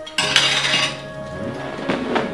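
Dishes and cutlery clinking at a set meal table, with a louder clatter a moment in, over background music with steady held notes.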